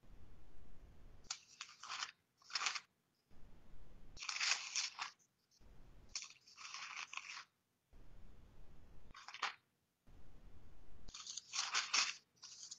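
Thin Bible pages rustling and crinkling in several short bursts as they are leafed through to find a passage.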